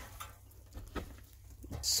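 Faint rustling of loose straw with a few light clicks, then a man's voice starts near the end.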